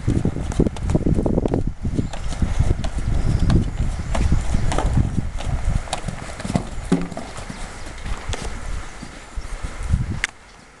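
Hoofbeats of a ridden horse trotting and cantering on a sand arena surface: a run of low, muffled thuds that grows fainter near the end as the horse moves away.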